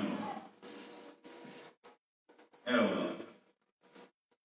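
A man's voice trails off, then he takes a long breath close to the microphone. About three seconds in he makes a short vocal sound that falls in pitch.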